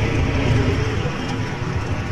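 Steady outdoor background noise with a strong low rumble.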